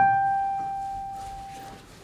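A digital piano plays one high note, struck right at the start and left to ring, fading out over nearly two seconds: the starting pitch given to the sopranos before they sing.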